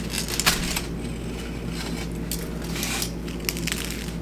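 Aluminium foil crinkling in irregular bursts as it is pulled open from around a bagel.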